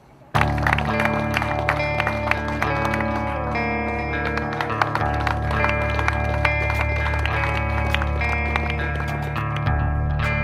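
Background music with held chords and a drum beat, starting suddenly just after the beginning.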